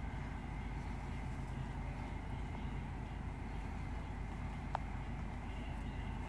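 Steady low background hum with a faint high whine, and one short sharp click about three-quarters of the way through.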